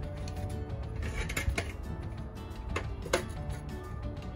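Background music, with about five sharp taps of a mallet on a concrete block, knocking it down level into the wet concrete footing.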